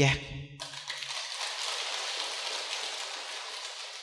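Audience applauding, starting abruptly about half a second in, holding steady and fading away near the end.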